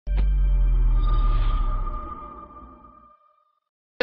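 Short broadcast intro sting: a sudden deep boom with a held high ringing tone above it, fading away over about three seconds.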